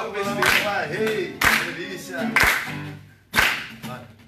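Acoustic guitars played in a small group, with voices, and a sharp clap-like hit keeping a beat about once a second.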